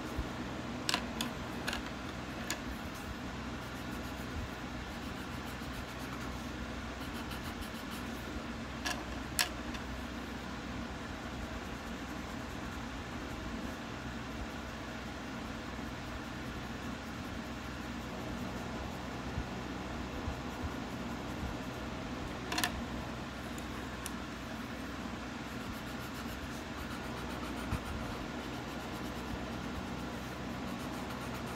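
Soft scratching of a 6B graphite pencil shading on sketchbook paper over a steady background hum, with a few light clicks in the first few seconds, a pair about nine seconds in and one about two-thirds of the way through.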